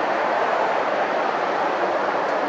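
Steady road traffic noise, an even rush with no distinct engine note.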